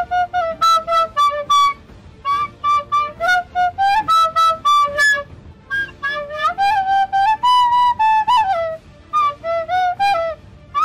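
A flute-like wind instrument playing a melody of quick short notes in phrases, with a run of longer, higher held notes in the middle.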